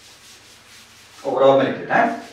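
A blackboard duster rubbing chalk off a blackboard, a soft steady scratching. About a second and a quarter in, a man's voice comes in louder and runs to the end.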